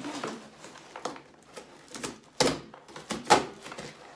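Cardboard shipping box being pried and torn open without a knife, with several sharp ripping and tearing sounds of cardboard and packing tape, the loudest about two and a half and three and a half seconds in.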